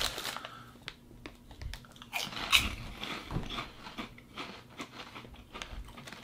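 Crunchy bacon-flavoured snack pieces being bitten and chewed: irregular crisp crunches, the loudest a little after two seconds in.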